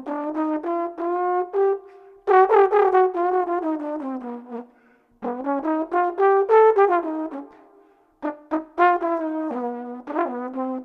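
Solo trombone, unaccompanied, playing flowing jazz phrases of quick separately tongued notes. There are brief breath pauses about two, five and eight seconds in.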